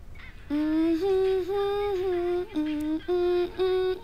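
A girl's voice humming a simple tune in held notes that step up and down, starting about half a second in.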